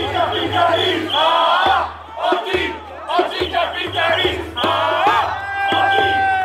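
Crowd of street protesters shouting and chanting in many overlapping voices. Near the end one voice holds a long, high cry that drops in pitch as it stops.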